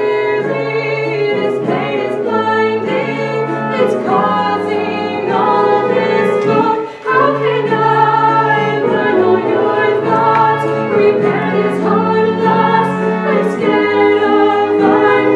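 Live singing from a stage musical, voices holding sustained melodic lines over steady held low notes from an instrumental accompaniment, with a brief drop in level about halfway through.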